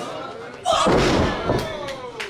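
A wrestler landing hard on the ring canvas after a flip off the top rope: a loud thud about two-thirds of a second in and a smaller one just past halfway, with the crowd shouting.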